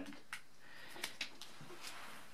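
A few faint clicks and light handling noise as a laptop charger's cable and barrel plug are picked up, over quiet room tone.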